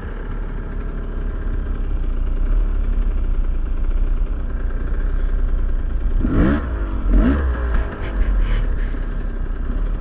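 Dirt bike engine idling, with the throttle blipped twice in quick succession about six and seven seconds in, each rev rising and falling back.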